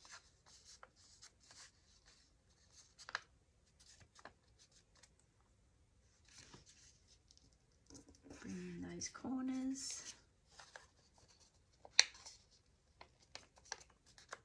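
Soft scratching and rubbing of an ink dauber worked along the edges of a small folded book-page envelope, then paper rustling and creasing as the envelope is folded and pressed flat. A brief voice sounds a little past the middle, and a single sharp tap comes near the end.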